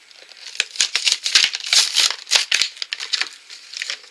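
Plastic and cardboard toy packaging being handled and pulled open: a quick, dense run of rattling and crinkling, busiest in the first half, then thinning out.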